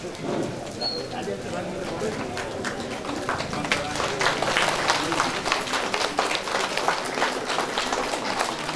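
A room of people clapping. The applause starts about three seconds in and grows louder, over background talk.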